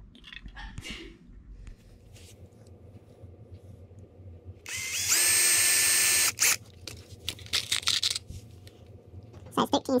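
Cordless drill spinning up and drilling a small pilot hole into the wooden frame of a tip-up: a steady whine about a second and a half long that rises in pitch as it starts, then cuts off. A few short knocks of handling follow.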